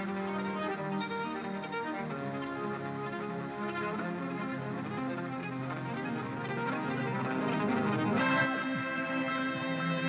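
Amplified viola playing sustained, layered notes through reverb and a looper, with its effects switched by arm movement through a MYO armband. The upper overtones grow brighter near the end as the sound moves from the reverb into a filter.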